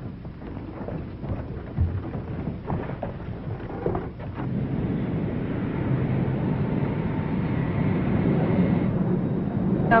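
Jet airliner engines running: a low steady rumble that grows louder over several seconds, with a thin high whine coming in near the end.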